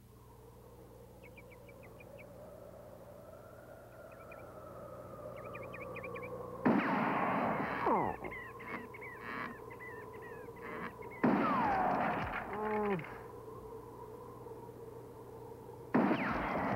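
Commercial soundtrack of outdoor country ambience with birds chirping, slowly growing louder. It is broken twice, about seven and eleven seconds in, by a sudden loud sound effect, each followed by a falling pitch glide.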